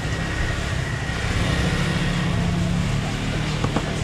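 A steady low mechanical drone, engine-like, with a faint thin high whine over a noisy background.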